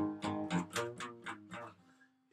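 Acoustic guitar strummed in an even rhythm, about four strums a second, the strings ringing and dying away near the end.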